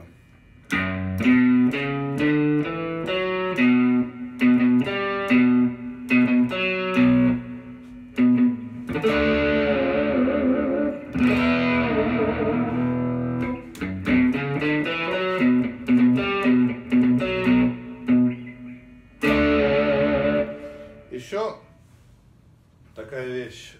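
Fender Stratocaster electric guitar, played through a Line 6 Helix processor, picking a single-note riff slowly, with one note repeated between the moving notes. Some held notes waver in pitch around the middle.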